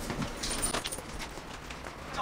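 Light metallic clicks and rattling from the lever handle and latch of a glass-panelled door being worked open, a few short clicks in the first second, then quieter.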